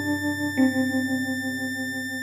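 Electronic music: sustained synthesizer-like notes over a steady low drone, with a row of thin high steady tones above. The held note steps down in pitch about half a second in.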